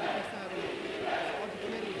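Arena crowd noise from the spectators at an indoor basketball game, a steady even hiss of many voices.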